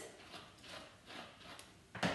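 Faint strokes of a dog brush through a poodle's dense curly coat: four or five soft swishes.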